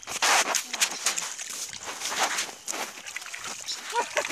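Splashing and squelching in wet rice-paddy mud and shallow water, in irregular bursts.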